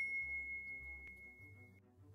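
A single high, pure chime tone left ringing after an intro sting cuts off, fading away steadily until it stops just before the end, with a faint tick about a second in.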